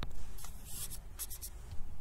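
A stylus scratching and tapping on a tablet screen: a short scratchy stroke about half a second in, then a few quick taps a little after a second.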